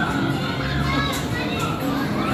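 Children's voices and chatter over background music with held low notes.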